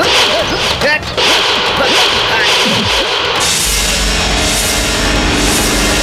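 Film fight-scene soundtrack: repeated whooshing swishes and short shouts over background music. About halfway through, the music settles into a low, sustained drone.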